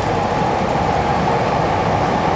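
Steady rumbling noise of a passing vehicle.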